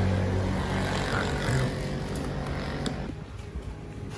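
A low, steady motor-vehicle engine hum that fades away over the first three seconds, with a faint click near the end.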